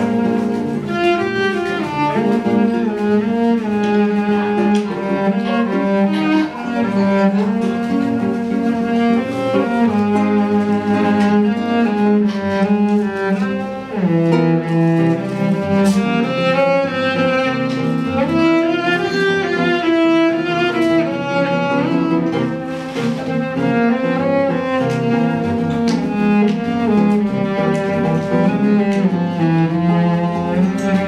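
Cello playing a melody over a nylon-string classical guitar, an instrumental passage with no singing.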